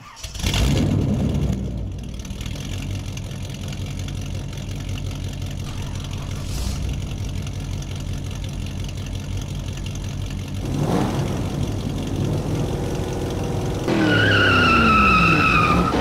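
Car engine sound effect: a steady low idle, then revving up with rising pitch about eleven seconds in, and near the end a loud high tone that slides down in pitch.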